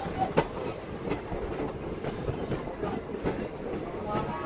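Indian Railways passenger coach running on the track: a steady rolling rumble with irregular wheel clicks over the rails, the loudest about half a second in.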